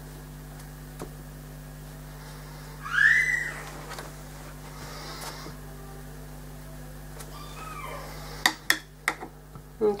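A pet's call: one short cry about three seconds in that rises and falls in pitch, and a fainter one near eight seconds. A few light knocks follow near the end.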